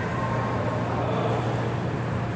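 Steady low hum under an even background noise, unchanging throughout, with no ball strikes.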